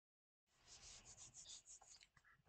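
Faint scratchy rubbing close to the microphone: a quick run of short strokes, about five or six a second, starting about half a second in.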